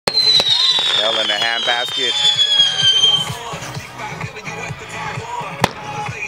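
A consumer 15-shot firework cake firing. A shot launches with a sharp pop and a whistle that falls steadily in pitch for about three seconds. Another sharp bang comes near the end.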